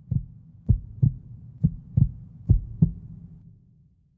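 Heartbeat-like double thumps, low and slow at about one beat a second, over a faint low hum; the beats stop after about three and a half seconds and the hum fades.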